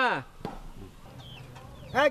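Chickens clucking faintly in the background, after a spoken syllable at the very start.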